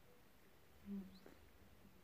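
Near silence in a small room, broken about a second in by one short, low vocal sound from a person.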